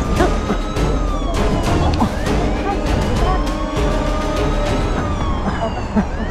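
A police siren wailing, its pitch rising slowly over a few seconds and then dropping back, twice, over background music with a steady beat.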